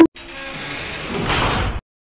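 Jail cell door sound effect: steel bars sliding shut with a rough metallic rumble that grows louder and cuts off suddenly near the end.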